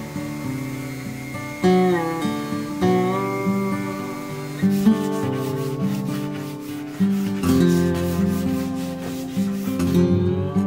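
Acoustic guitar background music, with fresh notes plucked every second or two, over the rasp of sandpaper rubbed back and forth by hand on a pine board, the rubbing plainest in the second half.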